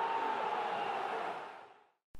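Football stadium crowd noise, a dense wash with faint chanting voices in it, fading out near the end.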